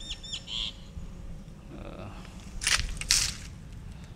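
Two crunching footsteps on gravel near the end, close together. A few short, falling bird chirps at the start.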